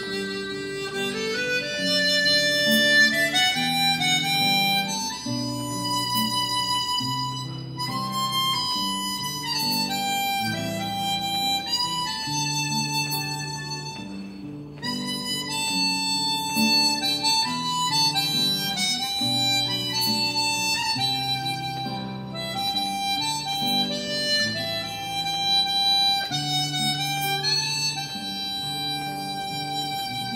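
Harmonica playing the melody of a slow song in long held notes, with an acoustic guitar strumming chords underneath.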